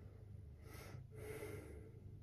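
A woman breathing audibly while holding a seated yoga forward bend: two faint breaths about half a second in, the second one longer.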